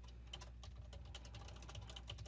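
Computer keyboard being typed on: a quick, faint run of keystrokes.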